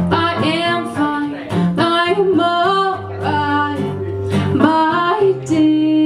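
Live song: a woman singing a melodic line, accompanied by strummed acoustic guitar and an electric piano.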